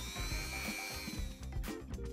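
Handheld rotary tool with a fine abrasive wheel running against a cast sterling silver pendant, a faint high motor whine, under background music.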